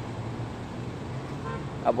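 Steady low hum of road traffic, with a faint short tone about one and a half seconds in.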